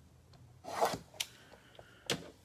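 Scraping, rasping rub of a shrink-wrapped cardboard trading-card box being handled and opened, with a short sharp click just after the middle.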